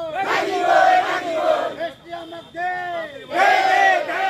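A crowd of protesters shouting slogans together in long, loud phrases, with a short break between them about two seconds in.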